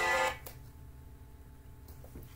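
A phone's ringing tune that cuts off about a third of a second in as the call is answered, leaving a faint steady room hum with a faint click or two.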